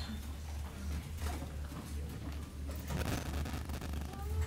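Ambience of a hall between numbers: a steady low hum under faint audience murmur and scattered small clicks and knocks.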